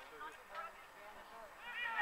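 Voices calling out during a football match: faint calls at first, then a loud, high-pitched shout that rises and falls near the end.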